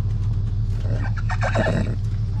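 A foal stepping down out of a stock trailer, with a short flurry of knocks and scrapes from about one second in, over a steady low rumble.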